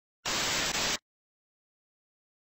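Static-noise glitch sound effect: a burst of hiss under a second long with a brief dropout near its end. It starts suddenly about a quarter second in and cuts off suddenly.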